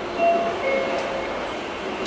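Cabin noise of a Tokyo Metro Tozai Line commuter train on the move: a steady running rumble with a sharp click from the wheels over a rail joint about a second in, and a few brief faint whistling tones.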